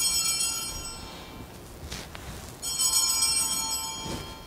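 Sanctus bells (a cluster of small altar bells) rung twice, about three seconds apart, each ring bright and shimmering before it fades. They mark the elevation of the consecrated bread after the words of institution.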